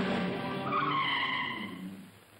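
Car tyres screeching for about a second as a car brakes hard to a stop, starting just before the middle, over background film music. The sound drops away sharply at the end.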